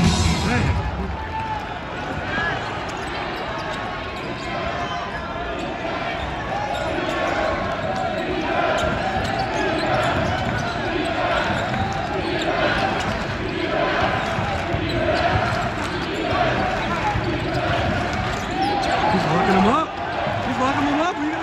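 Arena crowd chatter during live basketball play, with a basketball bouncing on the hardwood court. Arena music cuts off just after the start.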